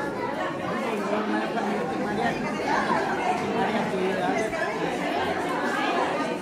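Crowd chatter: many people talking at once in a large room, with no single voice standing out.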